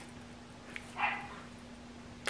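A small dog giving one short, faint whimper about a second in, just after a light click.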